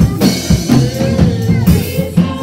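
Live gospel music from a church band, with a drum kit keeping a steady beat of about two strokes a second under the other instruments and voices.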